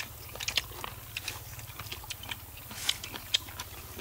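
A person chewing crunchy grilled golden apple snail meat close to the microphone: irregular crisp crackles and clicks, called crunchy ("giòn").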